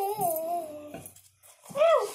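A young girl's high-pitched, drawn-out sing-song voice: a long note that falls away and stops about a second in, then a short high call near the end.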